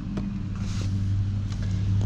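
A steady low motor hum, even in pitch, with a couple of faint clicks from items being handled.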